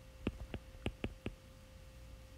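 Stylus writing on a tablet's glass screen: a run of about six light clicks over the first second or so, over a faint steady hum.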